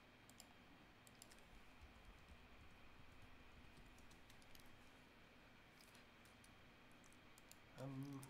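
Near silence: room tone with faint, scattered clicks from computer input at the drawing desk, and a short hummed voice right at the end.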